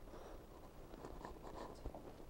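Quiet small room with faint rustling and light handling noise, and one small click near the end.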